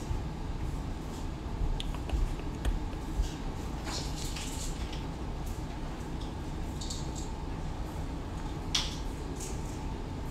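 Steady low room rumble with scattered light clicks and a few short rustling hisses, the clearest about four seconds in and again near the end.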